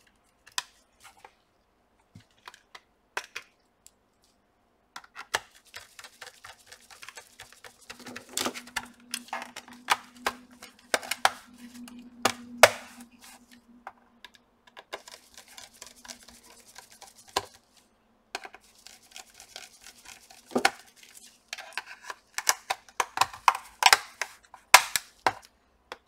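Hands working on a laptop's underside during reassembly: sparse clicks at first, then a dense run of small plastic and metal clicks, taps and scrapes as a hard drive is fitted and the bottom covers are put back and screwed down. A few sharper snaps or knocks stand out, and a faint steady hum runs through the middle.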